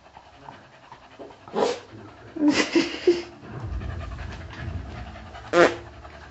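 A dog panting, with a few short, louder sounds breaking in about one and a half, two and a half and five and a half seconds in.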